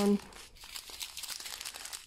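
Soft, irregular crinkling of small sealed plastic bags of diamond painting drills as a strip of them is pulled up and handled.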